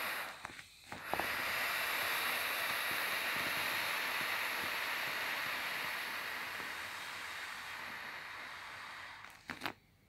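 Air hissing out of the valve of a vinyl inflatable air mattress as a hand presses it down to deflate it. The hiss breaks off briefly just before a second in, then runs steadily and slowly fades, ending in a few short clicks near the end.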